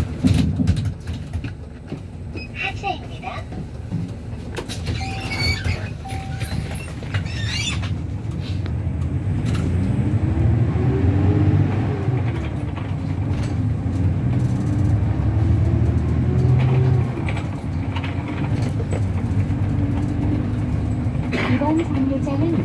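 City bus heard from inside the cabin: the engine and drivetrain rumble, growing louder as the bus pulls away, and a whine rises in pitch about nine seconds in, holds, then drops near seventeen seconds. A few squeaks and rattles come in the first several seconds.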